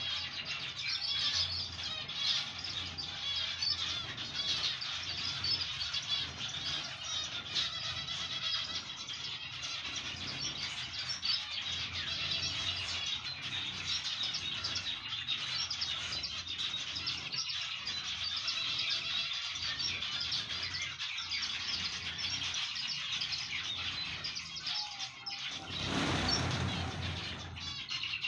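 A flock of zebra finches chirping continuously, many short, high calls overlapping. Near the end a brief burst of rushing noise rises over the calls.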